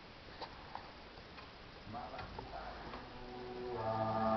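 A few faint clicks, then music with strong, steady bass notes fading in near the end, played through a subwoofer in a new enclosure.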